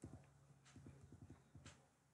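Near silence: faint room tone with a low hum and a few faint, scattered clicks.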